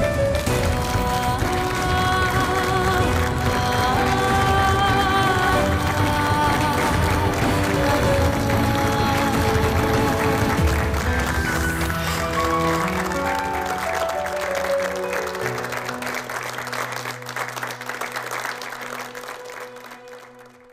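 Closing theme music over a studio audience applauding. The music settles into long held low notes in the last few seconds and fades toward the end.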